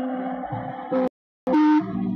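Live rock band holding a sustained chord of steady notes, broken by a complete cut-out of the audio for about a third of a second a little past a second in, a fault in the recording.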